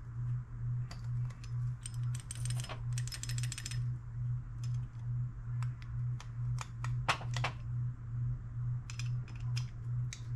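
Small metallic clicks and scrapes of a screwdriver turning a brass emulsion tube into a Honda GCV190 carburetor body. There is a quick run of rapid clicking a couple of seconds in and a louder cluster of clicks about seven seconds in, over a steady, evenly pulsing low hum.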